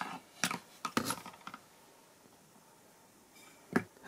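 Small metal clicks and scrapes from the old hand pump's plunger parts being handled as a nut is unscrewed by hand: several in the first second and a half, then one more just before the end.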